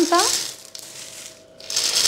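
Dried white beans pouring from a jar onto parchment paper in a tart tin, a dry rattling patter as the baking weights for the pastry are filled in. The pour is strong at the start, dies down in the middle and picks up again near the end.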